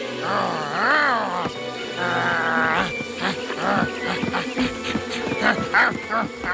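Snarling and yelping cartoon wolves in a fight, their cries swooping up and down in pitch, over dramatic background music.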